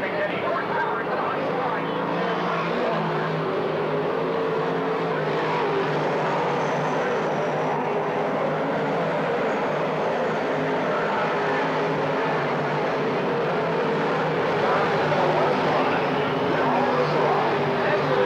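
Dirt modified race cars running at speed on a dirt oval, a steady engine drone from the pack that grows a little louder near the end.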